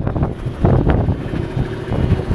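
Wind buffeting the microphone in uneven gusts, a loud low rumble.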